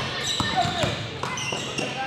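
Basketball bouncing on a hardwood gym floor, a few dribbles at uneven spacing, echoing in a large hall, with voices in the background.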